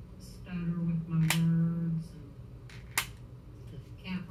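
Two sharp clicks, about a second in and again near three seconds, from cosmetics packaging being worked at and resisting opening. A woman's low wordless voice sounds under the first click.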